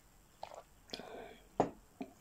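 Mouth noises just after a sip from a mug: a few wet clicks and smacks of swallowing and lips, with a short breathy hiss between them. The sharpest click comes about one and a half seconds in.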